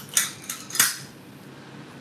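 Metal nail drill bits clinking against one another and the sides of a small plastic jar as they are picked through by hand: a few sharp clicks in the first second, the loudest just under a second in.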